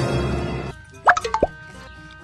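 Dramatic background music cuts off under a second in, followed by a quick run of three or four rising 'bloop' cartoon sound effects, then quieter music with held notes.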